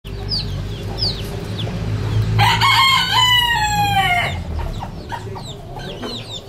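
Ornamental-breed rooster crowing once, a long call of about two seconds that starts about two and a half seconds in and falls slightly in pitch. Chicks peep with short high chirps before and after it, over a low steady rumble.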